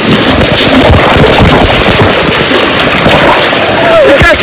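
Water rushing and splashing close on the microphone, with a dense run of crackling knocks.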